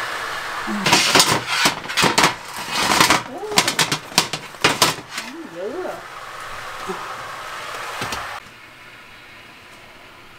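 Metal baking pans clattering as fresh-baked baguettes come out of the oven: a quick run of sharp clicks and knocks from the perforated baguette tray and sheet pan. Under it runs a steady hiss that cuts off suddenly near the end.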